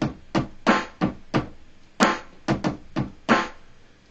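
A run of about ten short, irregular percussive sample hits, each with a brief decaying pitched tail, played from a Maschine controller's pads. They sound because the MIDI root note now matches the pad group being played.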